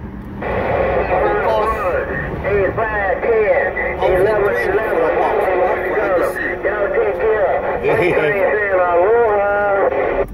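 Several stations talking over one another on a President Lincoln II+ radio tuned to 27.085 MHz (CB channel 11), heard through its speaker as a thin, garbled jumble of voices: a whole lot of traffic on the channel.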